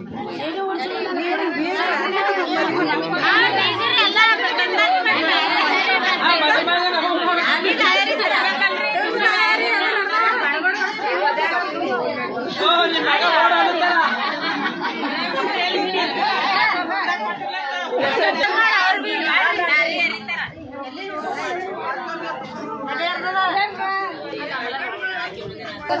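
Many women's voices talking over one another in a lively crowd chatter, with no single voice standing out.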